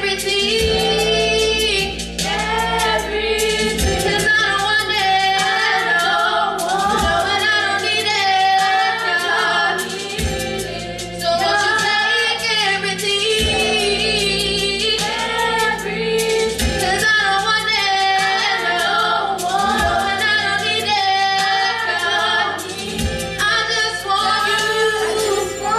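Four women singing a gospel song together in harmony through microphones, over a low held bass accompaniment with an occasional beat.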